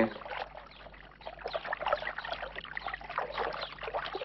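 Water from a town fountain's spout trickling and splashing steadily into its basin.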